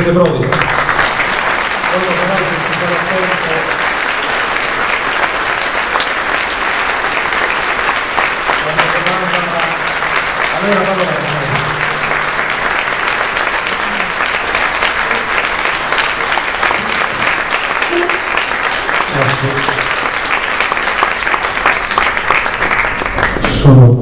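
Audience in a hall applauding steadily, with a few men's voices talking quietly near the microphone under the clapping; the applause gives way to a voice at the microphone near the end.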